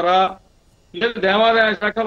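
Speech only: a man talking in Telugu, with a pause of about half a second in the middle.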